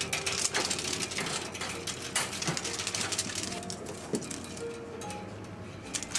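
Rapid crackly rustling of a cat teaser toy's shiny streamers being swung and batted, over soft background music.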